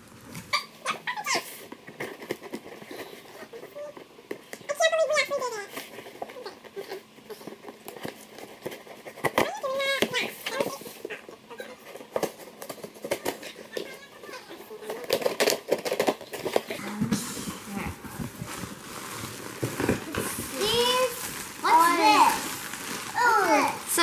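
A cardboard shipping box is being opened by hand, its top and flaps handled with scattered rustles and scrapes. From about two-thirds of the way in, plastic air-pillow packing crinkles. Children's voices break in now and then.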